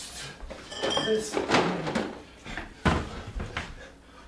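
Bottles and jars being grabbed from an open refrigerator and set down on a kitchen counter in a hurry, with a sharp knock about three seconds in.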